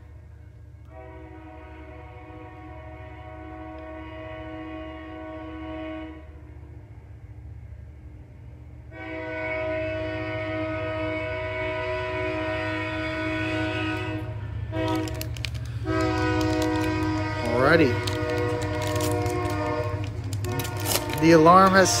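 Train horn sounding the grade-crossing pattern: two long blasts, a short one, then a long one, over the steady rumble of the passing train, which grows louder.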